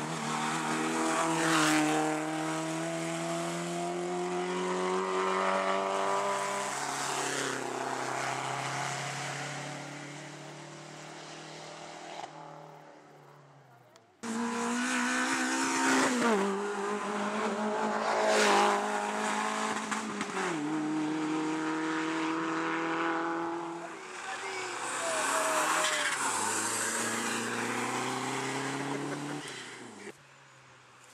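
Rally car engines at full throttle, the pitch climbing and stepping down at each gear change. The first car fades away over about fourteen seconds; an abrupt cut then brings in another car running hard.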